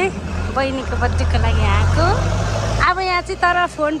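Voices talking over a loud, low, steady motor-vehicle engine rumble, which cuts off suddenly about three seconds in.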